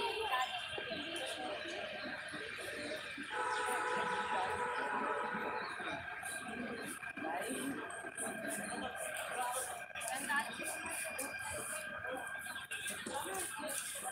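Indistinct voices talking in the background, with faint steady tones beneath them and a brief cluster of held tones a few seconds in.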